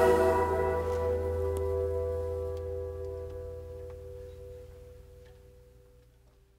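The last chord of a folk song ringing out and fading away to silence.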